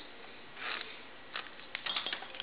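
Faint small clicks from a hand wire crimper being set on and squeezed shut on an insulated butt splice connector, a few of them close together in the second half.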